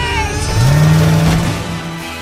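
Animated-film van engine revving up hard: the engine note climbs sharply about half a second in, then holds high as the vehicle accelerates, over music.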